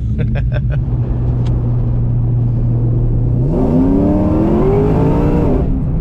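Ford Mustang Mach 1's boosted V8 running steadily, then accelerating hard about halfway through, its note climbing for about two seconds before levelling off. This is a pull under boost to test the upgraded fuel pumps, with fuel pressure holding up.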